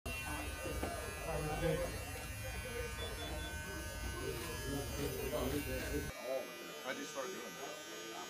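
Electric shaver buzzing steadily as a barber shaves a man's bald head, with voices in the room. The buzz stops about six seconds in.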